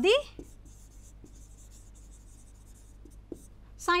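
Faint scratching of a pen writing, with a few light clicks, in a pause between spoken words.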